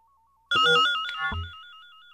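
Electronic tape music: a Buchla analog synthesizer tone warbling rapidly between two pitches, like a telephone ringing. It comes in about half a second in with a sudden cluster of electronic sounds and a low thud, then goes on more quietly.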